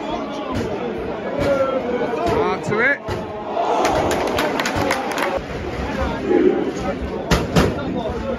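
Football stadium crowd in the stands: many nearby fans talking and shouting over one another, with several sharp cracks in the middle and near the end.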